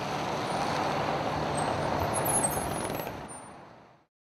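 Street traffic noise, a steady rushing that swells a little and then fades out near the end, with a few faint high chirps about two seconds in.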